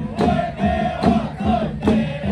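A xiaofatuan (Taoist ritual troupe) of many men chanting an incantation together in long held notes, over hand-held drums beaten in a steady rhythm about two to three strokes a second.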